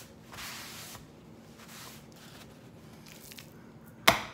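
Paper towel rubbed over a hand, a soft rustling hiss in the first second, followed by fainter handling sounds and a few small ticks.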